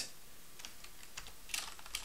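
A few faint computer keyboard keystrokes, scattered single clicks, as a shell command line is edited.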